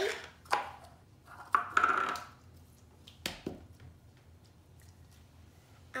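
A few sharp knocks and taps on a wooden tabletop as the slime and its small plastic tub are handled: three of them, about half a second, a second and a half and three seconds in, the middle one followed by a short rustling squish.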